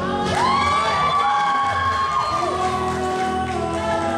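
A male singer singing a serenade live into a microphone over a backing track, holding one long note that slides up at its start.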